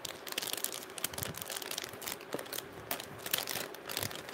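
Plastic jewellery packets crinkling and rustling as they are handled, a steady run of small crackles and clicks.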